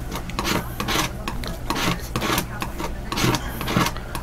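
Repeated scratchy scraping and rubbing strokes of a painting tool working through paint, several a second and irregular, as darker pigment is picked up and mixed.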